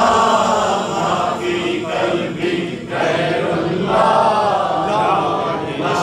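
A man singing a naat (Urdu devotional verse in praise of the Prophet) unaccompanied through a microphone and PA, in long, wavering, drawn-out phrases with brief pauses for breath.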